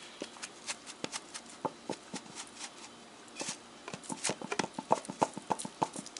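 Adobo seasoning shaken from its container over a stainless-steel bowl of conch meat: a run of light, irregular clicks and taps, coming faster in the last two seconds.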